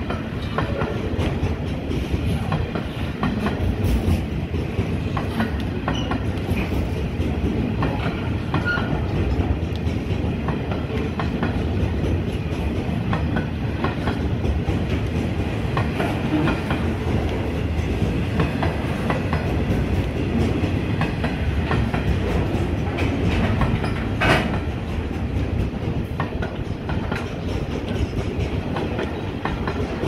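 Container freight train's wagons rolling past close by: a steady heavy rumble of steel wheels on rail with a rhythmic clickety-clack over the joints, and one sharp knock about three-quarters of the way through.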